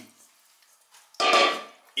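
Near silence, then a little past halfway a man's brief, steady-pitched vocal hesitation sound, about half a second long.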